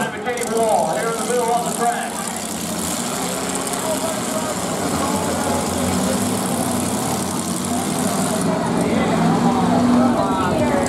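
Several demolition derby cars' engines running together in the arena, a steady mechanical drone. Voices sound over it in the first couple of seconds.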